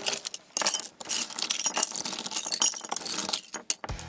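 Loose hard-plastic knockoff building bricks rattling and clinking against each other as they are handled, a dense run of sharp clicks with a brief lull about half a second in. Their clink is unusually high and glassy, a 'very strange sound' that sets them apart from genuine LEGO bricks.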